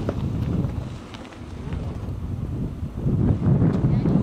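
Wind buffeting the camera microphone, a gusty low rumble that eases briefly about a second in and builds again near the end.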